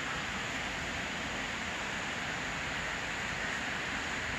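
Steady, even background hiss with no speech or distinct events, unchanging throughout.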